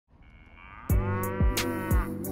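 A cow mooing in one long call, with a hip-hop beat's kick drums and hi-hats starting under it about a second in.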